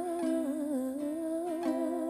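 A female voice sings a long, wavering wordless note over acoustic guitar, with a few light strums along the way.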